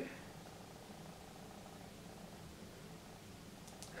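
Faint, steady low hum with a slight flutter, the room's background noise between words.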